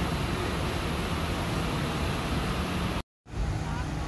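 Steady background noise of a busy outdoor city area at night, with faint distant voices. The sound cuts out for a moment about three seconds in.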